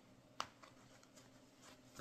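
Near silence with faint rustling of fabric being folded and handled by hand, and a single sharp click less than half a second in.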